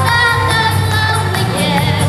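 A boy singing into a microphone over a recorded backing track with a steady beat.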